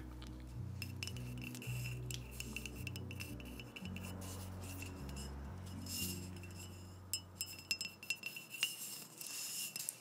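Fingernails tapping on and handling a glass mezcal bottle, a scatter of light clicks. Under them runs muffled background music with shifting low bass notes, which drops out about eight seconds in, leaving the taps clearer near the end.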